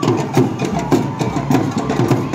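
Drums and percussion played together in a fast, even beat of about four strikes a second.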